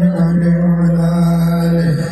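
Sholawat devotional chanting by male voices, holding one long steady note that dips near the end.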